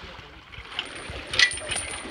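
A few sharp metal clinks from a galvanised boat trailer's winch and fittings, bunched together about one and a half seconds in. The loudest clink rings briefly.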